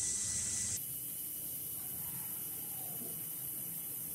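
Steady hiss with a faint high whine, brighter and slightly louder for about the first second, then even.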